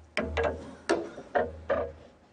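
About five sharp knocks at uneven spacing, each ringing briefly.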